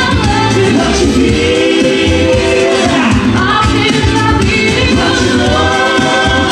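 Pop song performed live by a group of singers with microphones over amplified music, with long held sung notes over a steady bass line.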